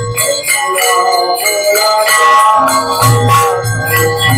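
Bells ringing continuously through devotional kirtan music during an aarti, with a wavering sung melody in the middle and low drum beats coming back in during the second half.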